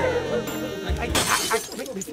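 Background music sting added in the edit, with a short, sharp crash-like noise a little over a second in.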